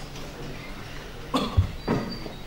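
A cough picked up close to a microphone, in short bursts with a deep thump between them, starting about a second and a half in; before that, only quiet room tone.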